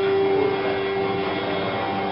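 Soundtrack of a war film clip playing through room speakers: several steady held tones over a noisy, rumbling bed.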